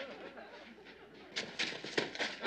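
Faint footsteps scuffing on a dirt floor, a few quick steps in the second half.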